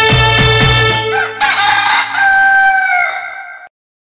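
The folk-song music with its drum beat stops about a second in. A rooster then crows once, a long call of about two seconds that dips in pitch and cuts off suddenly.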